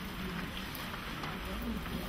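A pause in a meeting hall: low, steady room noise with a faint murmur of voices in the background.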